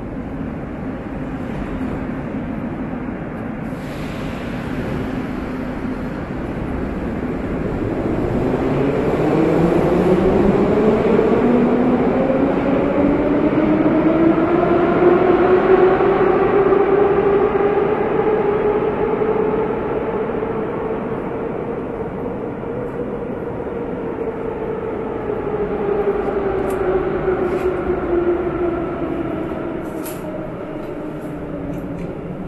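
A metro train pulling out of the station: its motors' whine rises steadily in pitch over several seconds as it gathers speed, then levels off and slowly fades as the train runs away down the tunnel.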